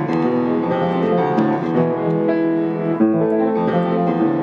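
Baldwin piano played slowly: held chords that change every second or so.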